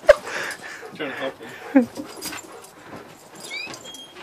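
A dog whimpering in short, pitched cries, with a few quick high rising yips near the end. A sharp knock sounds right at the start.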